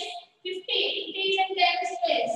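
A high voice chanting in a drawn-out, sing-song way: about five or six held syllables in a row, with a short break near the start.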